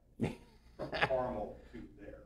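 A person's voice, quiet and brief, with the words not made out: a short sound near the start, then a wavering pitched utterance lasting under a second.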